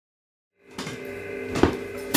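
After a moment of silence, a drum kit fades in with a steady ringing tone underneath and two hits, the louder one about one and a half seconds in.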